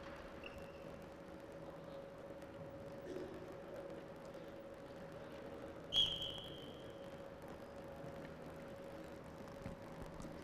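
A referee's whistle blows once about six seconds in, a short high blast that fades off with the hall's echo, signalling the kick-off after a goal. Under it runs a faint steady hum and quiet sports-hall room noise.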